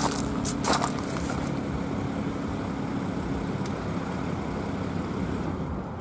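BMW SUV rolling to a stop on gravel: tyres crunching and popping stones in the first second or so, then its engine running with a low, steady rumble.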